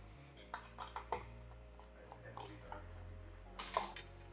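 Faint scattered clicks and light knocks of a 3D printer's metal frame and parts being handled as it is tipped onto its side, over a steady low hum.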